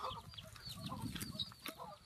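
Faint chickens clucking, with scattered short chirps in the background.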